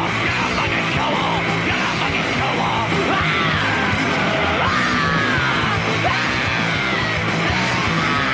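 Heavy rock band playing live, loud and dense, with a yelled vocal over it.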